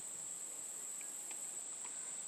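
Insects, such as crickets, trilling: one steady, high-pitched note that runs on without a break, over faint background hiss.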